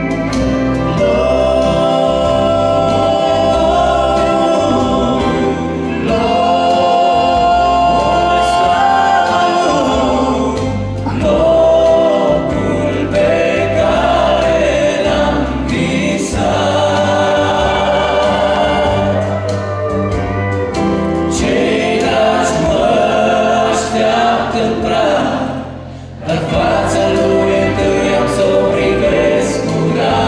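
A group of men singing a gospel song in harmony into microphones, amplified through a hall's loudspeakers over a low, steady accompaniment. The singing drops briefly about 26 seconds in, then resumes.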